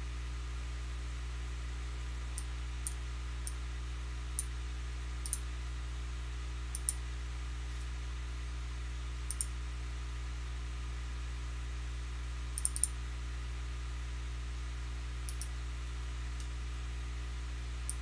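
Sparse, irregular light clicks from a computer mouse, about a dozen spread unevenly with one quick pair, over a steady low hum.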